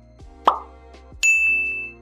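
Animated click transition sound effects: a short falling pop about half a second in, then a bright bell-like ding that rings steadily and fades out. Soft background music runs underneath.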